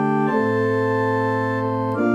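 Organ playing sustained chords as accompaniment for a sung psalm, moving to a new chord about a third of a second in and again near the end.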